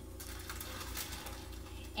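Faint handling sounds as a raw spatchcocked chicken is laid into a foil-lined pan: soft rustling with a few light clicks, over a low steady hum.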